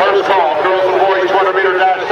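Several voices talking at once, overlapping and unclear, with no other distinct sound standing out.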